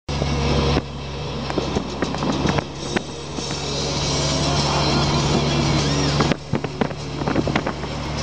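A car driving at road speed, heard from inside the cabin: a steady low engine and road hum under a wide rush of road noise, with a few light clicks and knocks, and a brief dip in loudness about six seconds in.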